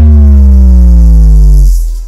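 Cartoon sound effect for a basketball in flight: a loud, steadily falling synthesized tone with a hissy whoosh over it, cutting off near the end.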